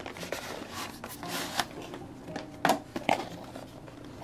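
Cardboard phone box being handled and opened: irregular rustling and scraping of card against card and skin, with a few sharper clicks and snaps, the loudest about three seconds in.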